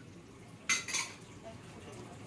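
Tableware clinking: two short, bright knocks of dishes or cutlery about a third of a second apart, a little under a second in, over faint room noise.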